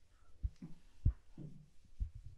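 A felt board eraser wiped across a chalkboard: soft rubbing strokes with dull low thumps, about two of them a second or so apart.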